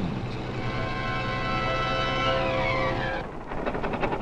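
Army truck engine pulling under load while towing a field gun: a steady drone for about three seconds, its pitch falling just before it stops. A rougher noise follows.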